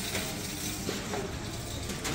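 Steady background noise of a large shop's interior, a low even room hum with nothing standing out.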